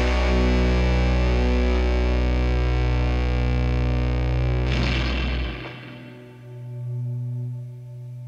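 Distorted electric guitars and bass letting a final chord ring out under effects. The deep bass drops away about two-thirds of the way through, and a quieter guitar sustain swells once more and fades.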